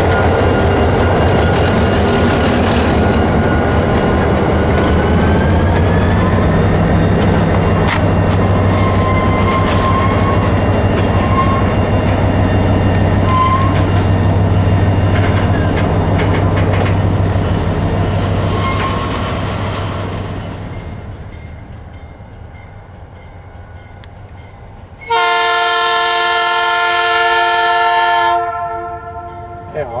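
A freight train of tank wagons passing close behind an EMD diesel-electric locomotive: a steady engine drone and wheel clatter that fade away in the second half. Near the end a loud diesel locomotive air horn sounds once for about three seconds, several tones sounding together as a chord.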